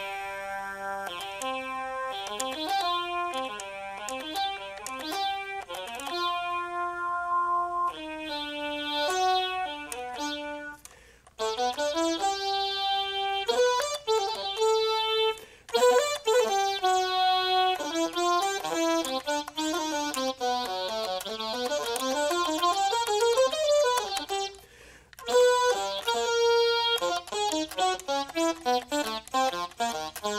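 Yamaha YDS-150 digital saxophone played on one of its synth-style voice presets (setting C16): a melodic phrase of bright, overtone-rich notes. It breaks off briefly twice, and in the middle several notes slide up and down in pitch.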